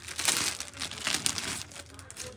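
A kurti set's fabric rustling as it is lifted, shaken open and spread out by hand, in a series of rustles over the first second and a half.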